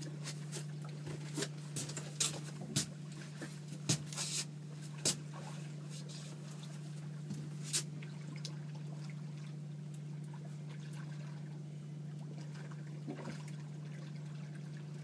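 A boat's outboard motor runs steadily as a low, even hum. Sharp clicks and knocks come and go through the first half.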